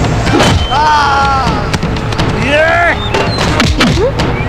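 Fight-scene soundtrack: dramatic background music with sharp punch and blow sound effects landing every second or so, and two short shouted cries, about a second in and again midway.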